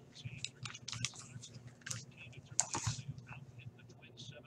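Typing on a computer keyboard: quick, irregular keystrokes with a busier, louder flurry near the end, over a faint low hum.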